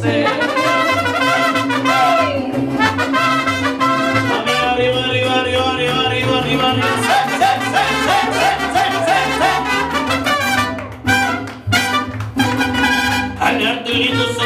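Live mariachi band playing an instrumental passage: trumpets carry the melody over guitars and a stepping bass line. About eleven seconds in, the band breaks into short, clipped chords.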